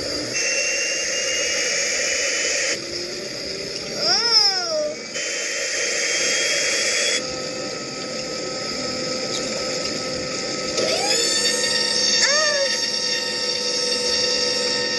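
Aircraft jet engine whine, a steady high-pitched hiss and whine that cuts abruptly in and out several times. A quick swooping tone rises and falls about four seconds in, and the pitch rises near the end as if the engines are spooling up for takeoff.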